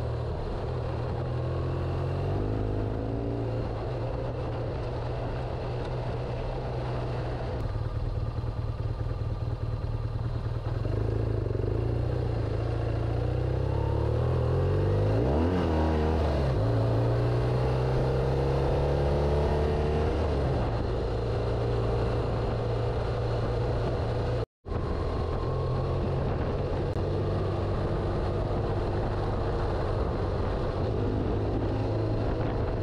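BMW GS Adventure motorcycle engine running at a steady cruise, with wind and tyre noise from the gravel road. About halfway through, the engine note falls and then climbs again as the revs drop and pick back up. The sound cuts out for an instant about three-quarters of the way through.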